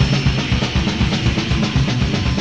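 Death/doom metal band playing an instrumental passage: a fast, steady drum-kit beat driven by bass drum under distorted electric guitar.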